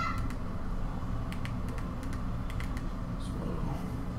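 Keys on a TV remote's small QWERTY keyboard clicking as a web address is typed, light presses in a few short runs.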